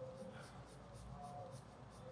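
Faint scratching of a coloured pencil on paper as short drawing strokes are made.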